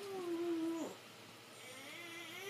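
Baby fussing: one drawn-out whining cry, held level in pitch for just under a second, then dropping off.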